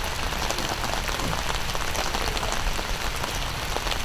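Steady rain pattering: an even hiss full of fine drop ticks.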